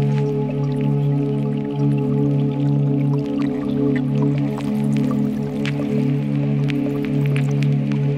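Ambient music from a eurorack modular synthesizer: a sustained low drone chord holds steady, with scattered short clicks and plinks over it, all in reverb.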